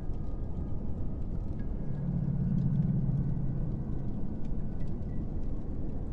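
Dark ambient background soundscape: a steady low rumble, with a low droning hum that swells in about two seconds in and fades out a couple of seconds later.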